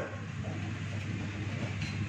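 A steady low hum under faint, irregular shuffling of feet on foam mats during sparring, with no clear strikes landing.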